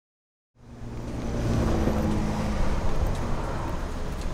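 Silence, then city street traffic noise fading in about half a second in, with a motor vehicle's engine running close by.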